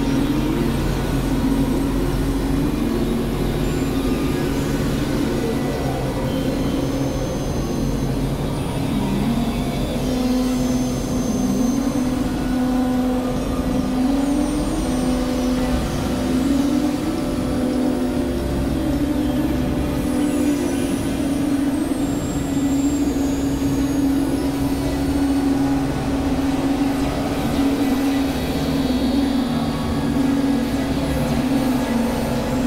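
Dense layered drone of mixed music and sound recordings: a steady rumble under a wavering, wobbling pitched tone that bends up and down throughout, without pauses.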